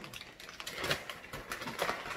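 Plastic pouch crinkling and crackling as it is handled and opened, in irregular rustles that thicken about a second in and again near the end.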